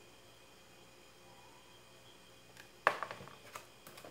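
Quiet room tone, then about three seconds in a sharp knock on the wooden work board followed by a few light clicks and rustles as the glued box and EVA foam hearts are handled.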